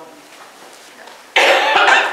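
A single loud cough, starting about a second and a half in and lasting under a second.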